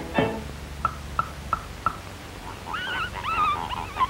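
Cartoon soundtrack effects: a sharp knock, then four short high blips in a quick even row, then from about two-thirds of the way in a run of animal-like cries that slide up and down in pitch.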